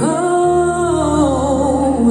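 A woman singing live into a microphone, holding one long phrase whose pitch sags gently downward, over held chords from the backing band. A low bass note comes in about half a second in.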